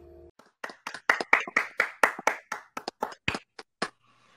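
Two people clapping their hands, a quick run of sharp claps, several a second, starting about half a second in and lasting about three seconds.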